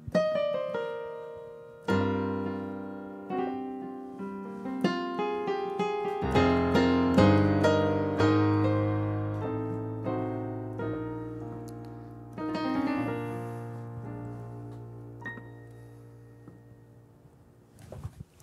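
Piano sound played on a Korg Kronos workstation's weighted keyboard: a slow passage of struck chords over low bass notes, each left to ring and die away. The playing thins out and fades in the last few seconds.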